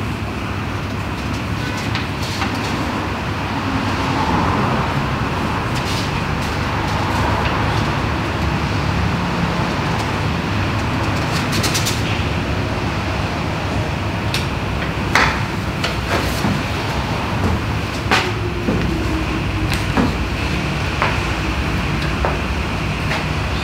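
Steady low background rumble and hiss with scattered short clicks and knocks, a few louder ones near the end.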